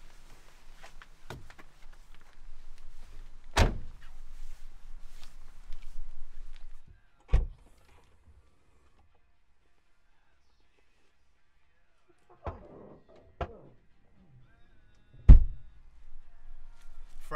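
Car doors and rear hatch being handled on a hatchback: a series of heavy thuds, the loudest near the end, with quieter rustling and handling noise between and a few seconds of near silence in the middle.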